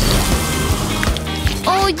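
Hissing whoosh of a fire-breath sound effect, fading out about a second in, over background music; a voice begins near the end.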